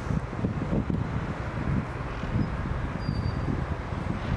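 Wind buffeting the microphone: an uneven low rumble that comes and goes in gusts.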